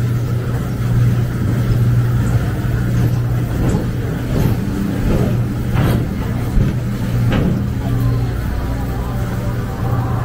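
Blazing Fury dark-ride car rolling along its track with a loud, steady low rumble. A few short, sharp sounds stand out around the middle and again a little later.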